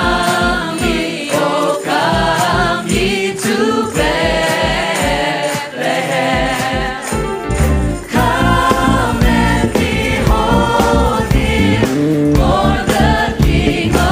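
Worship band and group of singers performing a gospel-style Christian song: several voices singing together over a steady beat, with the bass and full band filling out and getting louder about eight seconds in.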